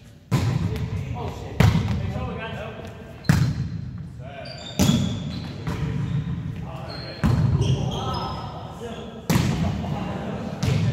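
A volleyball being struck: six sharp hits, one every one to two seconds, each ringing out in the echo of a large gymnasium, with players' voices between them.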